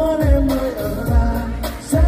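Vietnamese pop song: a singer's voice over a steady, deep kick-drum beat, about one thump every three-quarters of a second.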